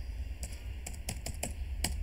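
Computer keyboard being typed: a quick, uneven run of keystroke clicks as a word is typed out.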